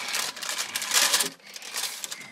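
Baking paper crinkling and rustling as a sheet is handled and slid onto a fridge shelf, a run of crackling strongest about a second in.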